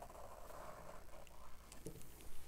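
Faint, soft scraping of a plastic comb's teeth dragged through wet acrylic paint across a canvas, fading out about a second in, with a small click near the end.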